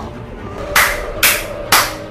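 Four sharp hits about half a second apart, over background music with a steady held tone.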